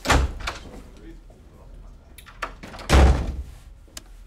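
Two heavy thuds about three seconds apart, each a sudden deep boom with a short ringing tail, with lighter clicks between them.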